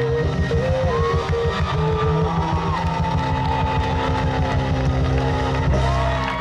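Live band music heard from the audience: piano, guitar, upright bass and drums playing a fast, pulsing low rhythm under held notes, ending on a loud chord near the end.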